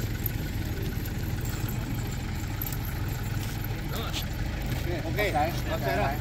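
Steady low hum of an idling engine, with faint voices talking.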